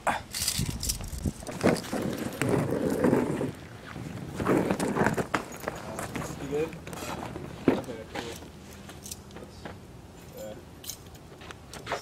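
Footsteps and a wheeled suitcase being pulled across a concrete driveway, with a few sharp knocks and short indistinct voices.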